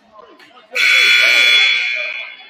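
Gym scoreboard horn sounding once, loud and steady for about a second and a half, starting about three quarters of a second in, over crowd chatter.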